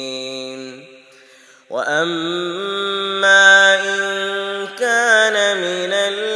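A man's voice reciting the Quran in a slow, melodic chant, drawing out long held notes. One held note fades out just under a second in, and after a short pause a new phrase begins and is sustained.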